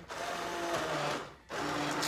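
Handheld immersion blender pureeing chunky potato soup in a pot, run in short pulses: a burst of about a second and a half, a brief stop, then it starts again.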